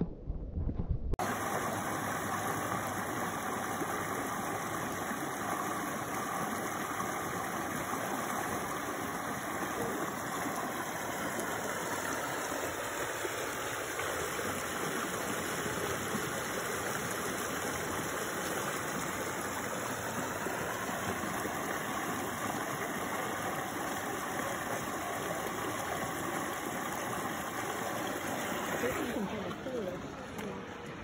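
Spring water rushing out of a pool over a concrete outlet into a stream channel: a steady, dense rush of white water that drops away near the end.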